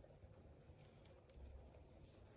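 Near silence, with a few faint scratches and rustles of laundry as a Moluccan cockatoo rummages with his beak among clothes inside a dryer drum.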